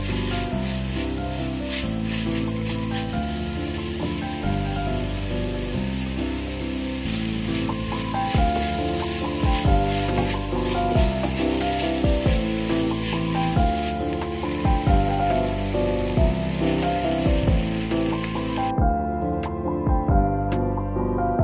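Thin-sliced pork and then cabbage sizzling in oil in a frying pan while being stirred and tossed, mixed with background music that has a soft beat. The sizzle cuts off abruptly near the end, leaving only the music.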